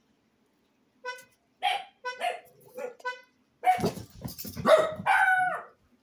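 A dog barking: about a second in, a few short high-pitched yips, then louder, fuller barks in quick succession over the last couple of seconds.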